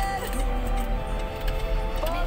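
Music playing from the car's FM radio through the cabin's Infinity speakers, with a steady low rumble underneath.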